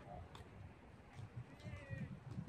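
Doubles tennis rally on a hard court: a few faint racket-on-ball strikes, and a short, high falling squeal near the end.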